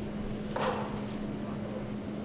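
Room background with a steady low hum, and a brief voice sound about half a second in.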